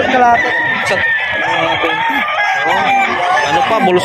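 A rooster crowing: one long, drawn-out crow, with people talking around it.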